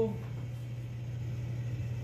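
A steady low hum with no other distinct sound: background room tone.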